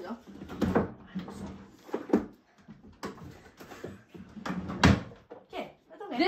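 A dresser drawer being worked in and out of its frame: several separate knocks and thumps of the drawer against the carcass, the loudest about five seconds in.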